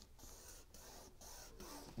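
Faint rustling and scraping of cardstock as it is folded closed and pressed down by hand, with a few soft ticks; the rest is near silence.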